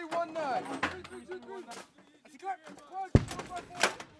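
Shouted gun-crew fire commands on a howitzer gun line, with a loud, sharp bang about three seconds in and a second, shorter crack just before the end.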